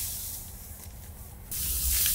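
Dry cut wheat stalks rustling and swishing as a bundle is gathered up by hand. A louder rustling starts suddenly about a second and a half in.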